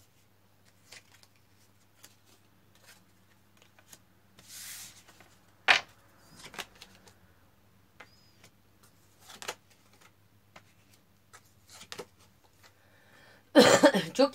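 Tarot cards being handled and laid down on a wooden table: scattered soft taps and clicks, a short sliding swish about five seconds in, and two sharper card snaps, the louder one just before six seconds in and another about nine and a half seconds in.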